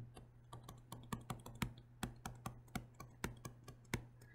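Faint, irregular taps and clicks of a stylus on a tablet as a short word is handwritten, about three or four taps a second.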